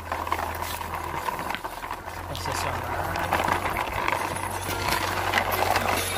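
Small homemade wooden toy truck rattling and scraping over rough concrete and dirt as it is pushed along by a stick, with many small clicks over a steady low rumble.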